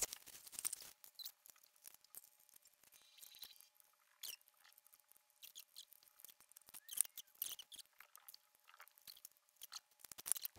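Faint crinkling and rustling of clear plastic wrapping being pulled off a pair of adjustable dumbbells, with scattered small clicks and crackles, the loudest about seven seconds in.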